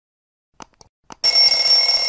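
Subscribe-animation sound effect: a few faint mouse clicks, then a loud notification-bell ring held steady for over a second.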